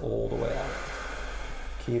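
A man's low wordless voice for about half a second at the start, then quiet until the first spoken word near the end. No joint crack is heard.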